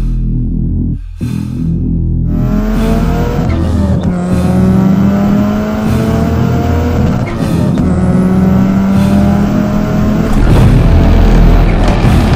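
Turbocharged Subaru flat-four, stroked to 2.2 litres and fitted with equal-length stainless headers and a full 76 mm exhaust, accelerating hard: the engine note climbs in pitch, drops at a gear change about four seconds in, climbs again, and shifts once more about seven seconds in before pulling up again.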